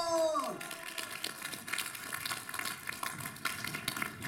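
A voice holding a long note that falls away about half a second in, then an audience applauding with many overlapping claps.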